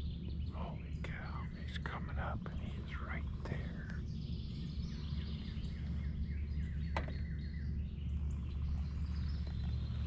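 Songbirds singing and chirping in woodland: a run of quick sweeping notes in the first few seconds, then thinner, steadier whistled calls, over a low steady rumble. A single sharp click comes about seven seconds in.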